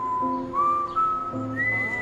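A whistled melody over soft guitar and music accompaniment. It climbs in slurred, held notes to a long high note near the end.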